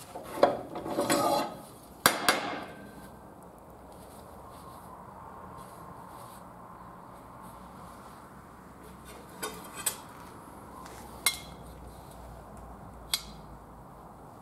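Steel stock and tools being handled on a metal bandsaw's vise and base: a burst of metal clattering and scraping in the first two seconds or so, then a few separate sharp metallic clinks in the second half.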